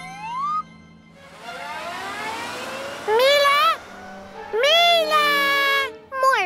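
Cartoon sound effects and a character's wordless vocal sounds. A rising glide and a rising whoosh come first, then a short pitched cry that bends up and down about three seconds in, and a longer held, whining cry near the end.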